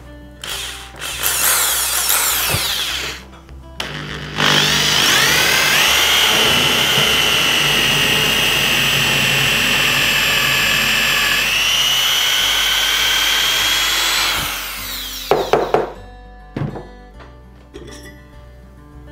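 Corded electric drill boring a hole into a wooden cylinder: a short spin-up first, then a steady run of about ten seconds whose whine rises as it comes up to speed and falls away as it winds down. A brief clatter of knocks follows.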